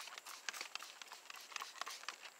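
Trigger spray bottle spritzing diluted rinseless wash onto car paint: a string of short, faint, hissy spritzes at an uneven pace.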